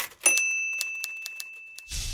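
Typewriter keys clacking in quick, uneven strokes, and the typewriter's bell ringing once just after the start, its tone fading slowly under the continuing clicks. A rushing whoosh with a low rumble swells in near the end.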